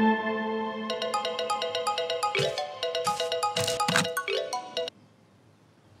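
A mobile phone ringtone playing a repeating melody of short, quick tones, which cuts off suddenly near the end when the call is answered. Held notes of soundtrack music fade out at the start, before the ringtone begins.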